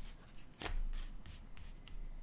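Lenormand cards being dealt one at a time from the deck onto a cloth-covered table: a string of soft card flicks and slaps, the loudest a little over half a second in.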